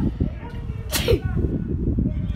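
Wind buffeting the phone's microphone with an uneven low rumble at an outdoor football match, broken by one short, sharp burst about a second in.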